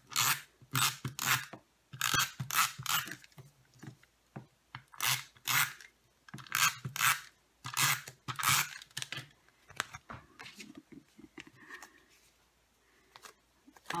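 Adhesive tape runner pulled in short strokes across cardstock, about a dozen quick rasping passes in the first nine seconds, then quieter paper handling near the end.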